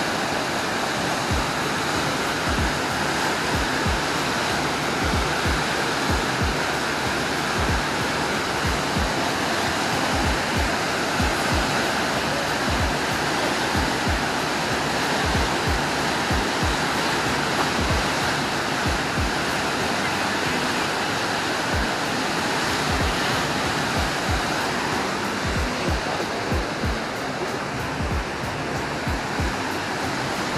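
Whitewater of Huka Falls rushing steadily down a narrow rock chute, with a background music track's steady drum beat over it.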